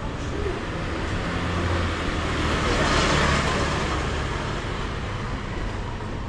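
A motor vehicle driving past on the street, with a low engine hum, growing loudest about three seconds in and then fading.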